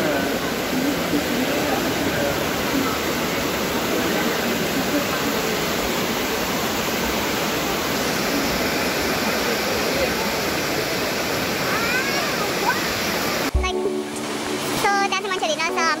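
Steady rush of whitewater from a fast mountain river running through a narrow rock gorge. About thirteen and a half seconds in it cuts off suddenly to music with voices.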